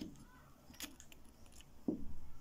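Rough mineral specimens being handled on a cloth: a few faint, sharp stone-on-stone clicks, a cluster of them just under a second in, and a soft low thump near the end.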